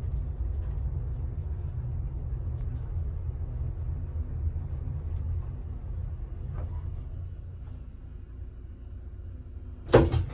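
Small vintage elevator car travelling between floors, its hoist and car giving a steady low rumble that eases slightly as it slows, then a sharp loud clunk right at the end as it arrives.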